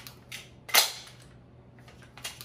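Sharp clicks from the JP GMR-15 9mm pistol-calibre carbine being handled: two faint clicks, then one loud click about three-quarters of a second in.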